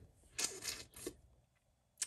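Two brief soft rustling, scraping handling noises in the first second, a pen or marker and paper being moved during colouring, then near silence.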